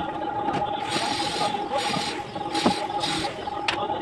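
Bricklaying sounds: a few sharp taps of brick and trowel, and a run of four scraping swishes in the middle as mortar is worked, over a steady high hum.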